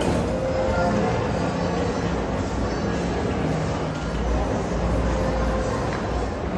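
Indoor ambience of a busy shopping-mall atrium: a steady wash of crowd noise and low rumble, with faint background music.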